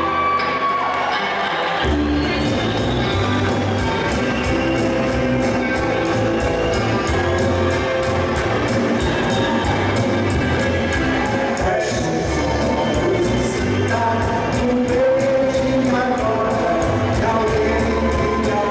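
A live rock band in the 1960s Brazilian Jovem Guarda style, playing acoustic and electric guitars, bass and drums. The low end is thin for the first couple of seconds, then the full band comes back in with a steady drum beat.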